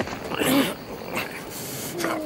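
Two men grappling on rocky ground: strained grunts and groans from the struggle, loudest about half a second in, with scuffling.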